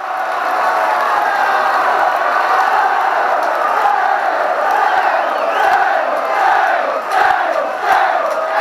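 Football crowd chanting and cheering, many voices together at a loud, steady level that starts abruptly.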